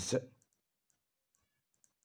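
Pen writing on a textbook page: a few faint scratches and small ticks as the word is written out.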